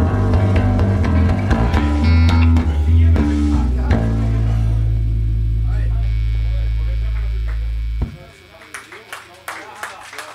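A live rock band with electric guitars, bass and drums plays the closing bars of a song. It ends on a low chord held for about four seconds that cuts off sharply about eight seconds in. The audience then starts to clap and cheer.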